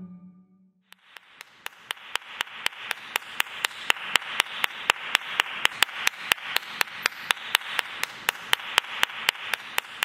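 The low tail of a final chord dies away in the first second; then a steady, evenly spaced clicking, about four clicks a second, starts over a hiss and keeps on.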